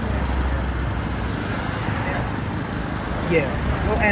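Street traffic noise: a steady low rumble of a passing vehicle that eases off about three seconds in, with a man's voice starting near the end.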